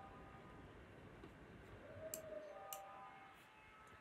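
Near silence, with faint thin held tones and a couple of faint clicks about two seconds in.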